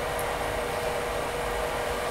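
Steady machine noise: an even whoosh with a faint constant hum underneath, unchanging throughout.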